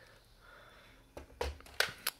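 Large plastic Lego spaceship model being turned around on a wooden floor: a few short knocks and scrapes in the second half, one a low thump.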